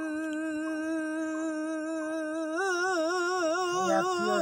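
A male singer holding one long sung note, steady at first and then wavering with vibrato from about two and a half seconds in; a short lower note joins near the end.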